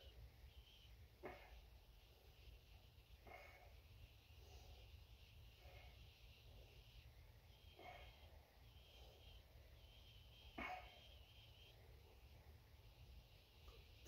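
Near silence: quiet room tone with about five faint short breaths or exhales, a couple of seconds apart.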